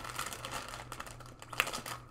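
Packaging crinkling and rustling as it is handled and opened, with a sharper crackle about one and a half seconds in.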